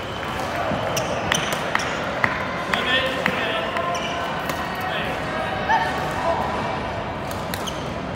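Badminton play in a large gym: repeated sharp hits of rackets on shuttlecocks and a few short shoe squeaks on the wooden floor, over a steady background of voices.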